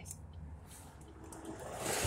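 Car cabin noise as the car moves off: a low steady engine hum under a rush of road and air noise that swells to a peak near the end.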